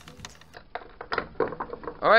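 Light clicks and knocks of 3D-printed plastic parts and a wooden tripod leg being handled and fitted together by hand, a few irregular strikes over about a second and a half.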